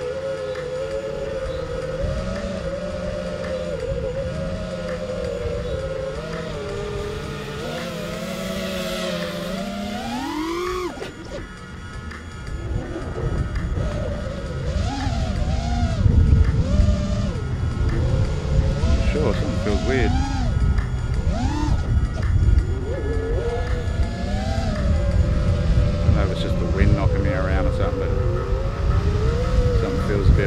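Eachine Wizard X220 racing quadcopter's brushless motors and 5045 props whining, heard from on board. The whine holds steady at first, then rises sharply about ten seconds in and drops away as the throttle is cut for the dive. From then on the pitch swoops up and down with throttle bursts over a heavy low rumble.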